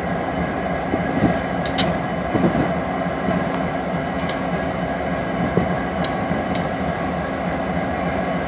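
Union Pacific freight diesel locomotives running with a steady, heavy engine rumble and several steady tones in it, with a few sharp high ticks scattered through.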